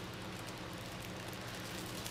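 A steady low hiss with a faint hum under it, unchanging, with no distinct events: room background noise.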